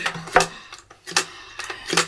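A few sharp clicks and knocks from a telephone being picked up and dialled.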